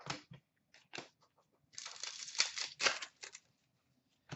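Cardboard trading cards being handled: a few short taps and rustles, then from about two seconds in a quick run of cards sliding and shuffling against one another, lasting about a second and a half.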